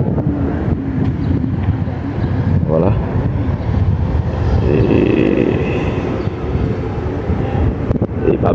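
Low, uneven outdoor rumble of wind on the microphone, with faint voices briefly about three seconds in and again around five seconds.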